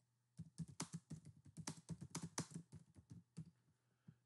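Computer keyboard keys clicking as a short phrase is typed: a quick, uneven run of faint keystrokes for about three seconds.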